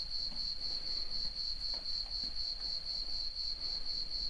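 Cricket chirping sound effect: a steady high-pitched trill that pulses rapidly. It is the comic 'crickets' that marks an awkward silence, here the unanswered call for questions.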